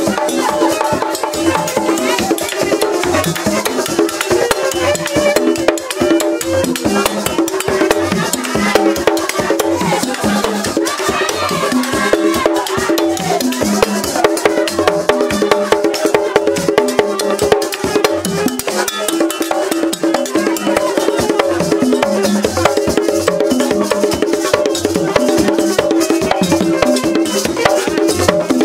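Vodou ceremonial drumming: several skin-headed hand drums struck in a fast, steady interlocking rhythm, with a group of voices singing over it.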